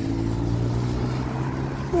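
A road vehicle's engine running close by: a steady low hum whose pitch sinks slightly, like a vehicle going past.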